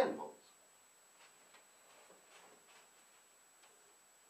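The end of a man's spoken word, then a quiet room with a few faint, unevenly spaced ticks or taps.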